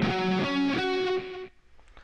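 Electric guitar, tuned down a half step, playing a lead note that rings for about a second and a half and is then cut off.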